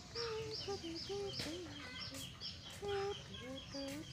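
Chickens in the yard: chicks peeping in short falling chirps, about three a second, under scattered lower clucking notes.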